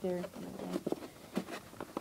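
A spoken word, then about five light, sharp clicks and scratches of small accessory parts and packaging being handled in a box.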